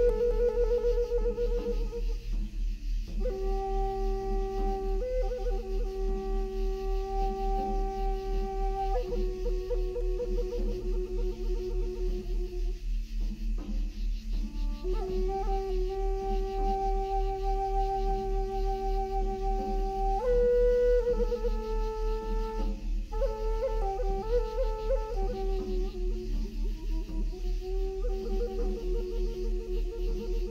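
Music: a flute plays slow phrases of long held notes with short pauses between them, over a low steady drone that pulses evenly several times a second, the 3.5 Hz delta binaural beat mixed into the track.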